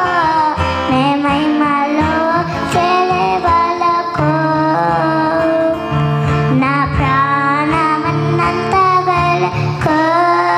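A young girl singing a Telugu Christian worship song into a microphone, her melody wavering and held on long notes, over instrumental accompaniment with steady low bass notes.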